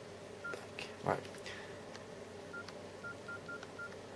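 Nokia E63 keypad tones: short, identical high beeps as keys on its QWERTY keyboard are pressed, one about half a second in, then five in quick succession near the end.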